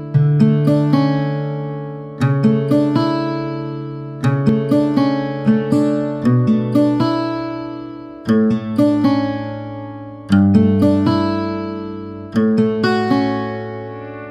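Background music of plucked acoustic guitar: a new chord is picked about every two seconds, each with a few quick plucked notes that ring out and fade before the next.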